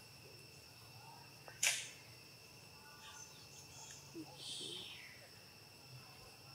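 Dry leaf litter rustling and crunching under macaque monkeys moving on it: one loud, sharp crunch about a second and a half in, and a longer rustle a little past the middle. A faint steady insect drone runs underneath.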